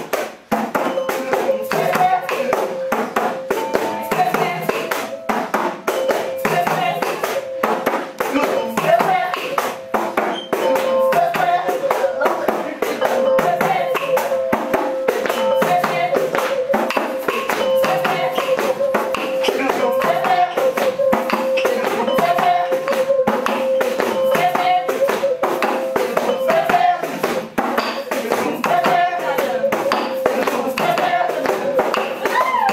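Frame drum beaten with a stick in a fast, even beat, with voices singing along over a steady held note.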